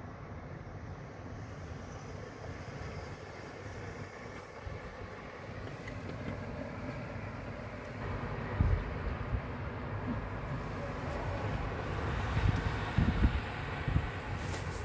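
Steady outdoor rumble that grows louder about eight seconds in, with several low thumps near the end.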